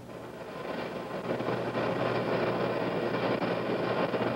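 Steady mechanical rumbling noise at the launch pad that builds over the first second and then holds evenly.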